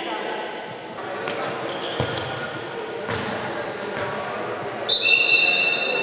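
Futsal ball knocks twice on the hard court amid voices echoing in a sports hall, then a loud, high, steady whistle sounds about five seconds in.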